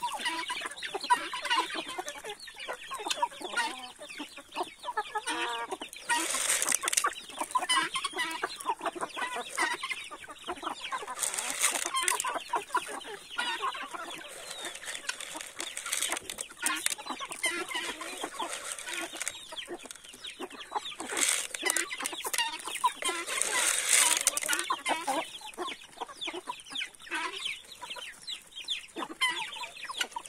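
A flock of chickens clucking continuously while pecking at scattered corn, with several louder bursts of calling every few seconds.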